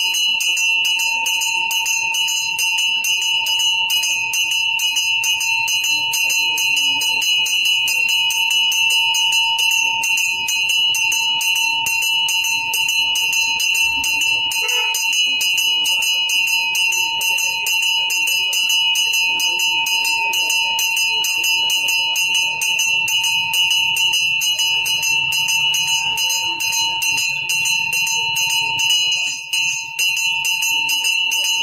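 A ritual bell rung rapidly and without pause during a Hindu pooja. It makes a steady ringing tone with a fast, even pulse of strokes, which breaks off for a moment near the end.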